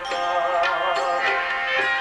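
Live Gujarati devotional bhajan music: sustained harmonium-like chords with hand-drum strokes about every 0.6 seconds.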